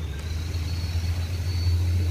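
A steady low mechanical hum with a faint high thin whine above it.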